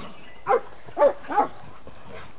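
Basset hound puppy giving three short, high yipping barks in quick succession while play-wrestling with a bigger dog.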